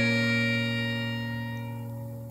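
Instrumental introduction of a song: a held chord that slowly fades away.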